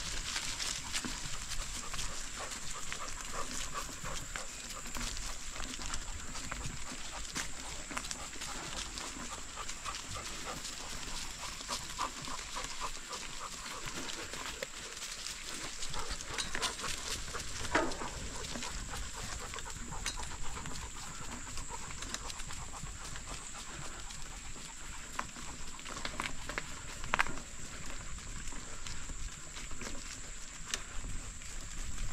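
Bicycle riding along a farm trail with steady small ticking and rattling, and a dog giving two short yelping barks, one a little past the middle and one near the end.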